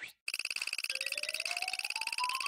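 Animation sound effect: rapid electronic ticking starts about a quarter second in. About a second in, a tone joins it and climbs in pitch step by step, accompanying a stack of money growing taller.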